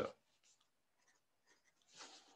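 Faint pencil strokes on paper as a short label is written, in a few brief scratches with near silence between.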